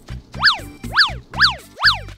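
Background music with a bass line, over which an electronic up-and-down pitch-sweep sound effect repeats about twice a second, starting about half a second in.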